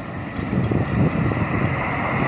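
Road traffic crossing a railroad grade crossing toward the microphone: car and pickup-truck tire and engine noise, growing louder about half a second in as the vehicles come closer.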